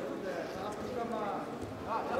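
Scattered shouts and chatter from coaches and spectators, echoing in a large sports hall.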